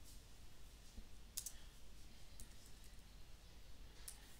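A few faint, widely spaced keystrokes on a computer keyboard over a low room hum.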